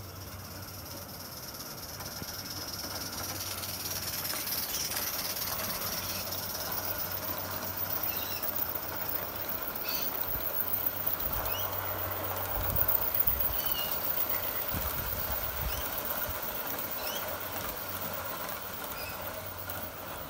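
Aster gauge 1 live-steam model of a Union Pacific FEF 4-8-4 running notched up (short cut-off, at speed) with a freight train, steam hissing as it approaches and passes, with the freight cars' wheels rolling on the track behind. The sound builds, is loudest about two-thirds of the way through, then fades.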